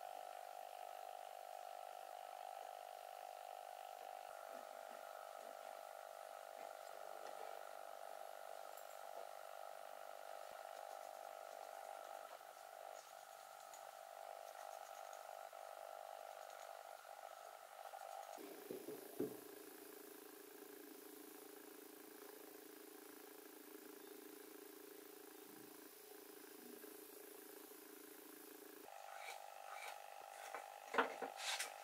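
Faint background music of steady held tones. It drops abruptly to a lower chord about eighteen seconds in and returns to the first chord near the end.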